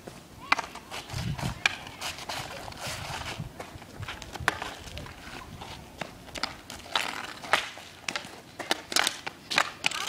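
Hockey sticks and a ball clacking on pavement during street play: a run of irregular sharp knocks and clacks.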